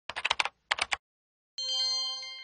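Sound effects of a website promo: two quick runs of rapid clicks like computer-keyboard typing, then, about a second and a half in, a bright chime of several ringing tones that slowly fades.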